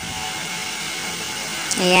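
Steady, even electrical buzzing hum with no other event in it. A single spoken word cuts in right at the end.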